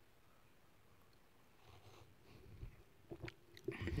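Faint mouth sounds of sipping and swallowing hot cocoa from a mug, with a few soft clicks of the lips and tongue near the end.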